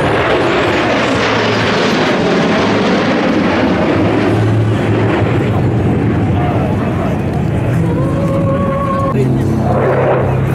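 Jet noise from the USAF Thunderbirds' F-16 Fighting Falcons passing overhead in formation, starting suddenly and fading slowly over several seconds.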